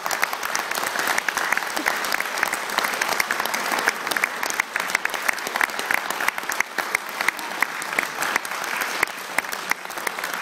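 A small audience clapping, with one pair of hands very close to the microphone giving sharper, louder claps over the rest.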